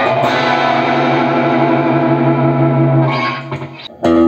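Gretsch G5420T hollow-body electric guitar played through an amplifier: a chord struck at the start rings on for about three seconds, then fades out near the end.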